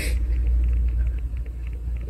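A low, steady rumble with a brief hiss at the very start.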